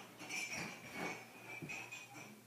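Soft thuds of bare feet and hands on a carpeted floor as a gymnast steps and kicks up into a handstand. A faint high-pitched tone comes and goes.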